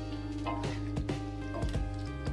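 Soft background music with steady held tones, and under it a few faint knocks and scrapes of a spatula stirring thick gravy in a steel kadhai.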